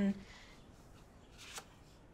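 A brief, faint rustle about a second and a half in, of a photograph being handled, against quiet room tone.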